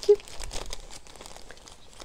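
Clear plastic zip-lock bag crinkling in soft, scattered rustles as it is handled and smoothed around a grafted mango cutting.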